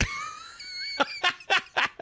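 A man bursting into high-pitched laughter: one long squealing note that rises slightly, then four short laughs.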